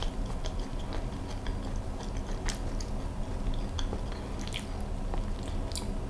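Close-miked chewing of a piece of baked mooncake: soft, wet mouth sounds with scattered small clicks, over a steady low hum.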